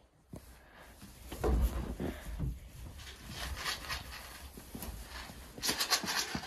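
Rustling and shuffling in straw bedding with scattered knocks, a low thud about a second and a half in and a cluster of sharp clicks near the end, as sheep and a person move about in a small wooden shed.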